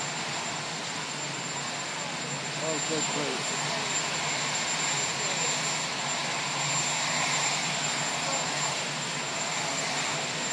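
A steady, even roar with a thin high whine running through it, and faint voices of onlookers underneath.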